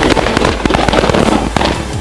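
Drift car's engine and exhaust letting out a rapid, irregular string of loud pops and crackles while the car slides, thinning out near the end.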